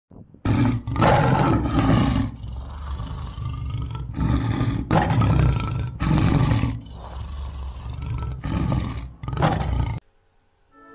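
Tabby domestic cat meowing loudly in a series of long, drawn-out calls, about five or six in all, over a low rumble.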